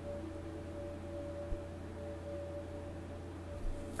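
Soft background drone music holding one steady ringing tone, like a singing bowl, over a low hum, with a faint tap about one and a half seconds in.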